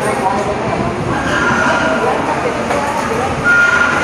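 Fast-food restaurant counter ambience: a steady hubbub of indistinct background voices and kitchen noise, with a short high tone near the end.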